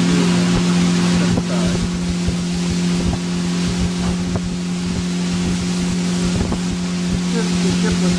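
Small boat's motor running at a steady speed, a constant drone, with wind on the microphone and water rushing past the hull.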